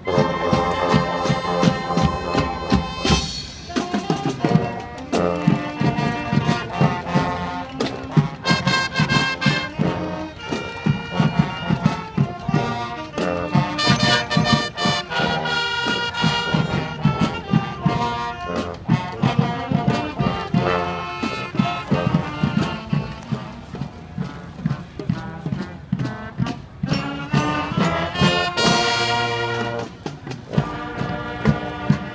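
A marching band playing live: brass and saxophones with sousaphones on the bass line, over a steady beat. There are two loud accents, about three seconds in and near the end.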